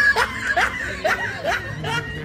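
Men chuckling and laughing in short repeated bursts, about three a second.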